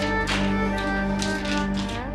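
Dramatic background score of sustained, droning string tones. A few short, light taps or rustles come over it about a third of a second in and again from just after one second.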